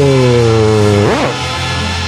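Live rock band with brass playing the instrumental closing vamp at the end of a concert. A held chord slides down in pitch, then a quick swoop up and back down about a second in, and the band carries on steadily.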